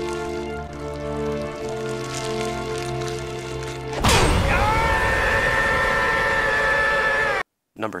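Slow, sustained dramatic score, then about halfway a sudden loud chop as a fire axe comes down on an arm, followed by a long held cry that cuts off abruptly near the end.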